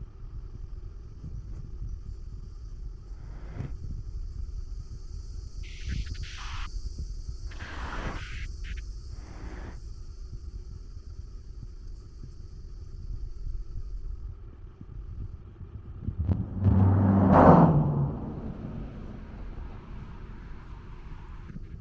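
Street traffic: a steady low rumble with a few cars passing, and, about three quarters of the way through, a vehicle engine passing close by, the loudest sound, its pitch rising slightly.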